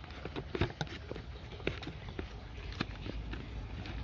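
Plastic screw-on pump head of a small handheld pressure sprayer being unscrewed from its bottle: scattered light clicks and knocks of plastic on plastic.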